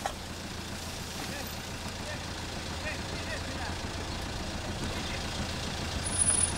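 Steady street traffic noise with a constant low engine hum from nearby motor vehicles.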